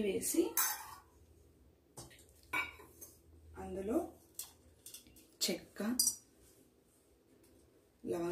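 Steel kitchen utensils clinking: several short, sharp knocks of a spoon and small steel bowl against each other and the pan.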